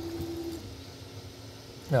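Ender 3 V3 SE 3D printer humming steadily while it runs its auto Z-offset routine; the hum steps down to a lower, fainter tone about half a second in.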